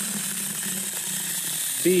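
Saker six-inch cordless mini chainsaw running steadily, its chain cutting into a small tree trunk: a steady low electric-motor hum with chain rattle. Speech starts just before the end.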